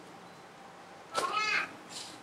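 A single short, high-pitched call with a brief arching rise and fall in pitch, a little over a second in.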